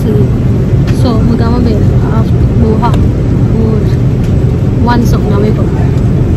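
Steady low rumble of an airliner cabin, with a person's voice talking over it in short phrases.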